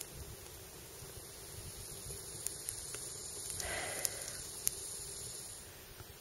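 Campfire burning with a steady soft hiss and a few sharp crackles.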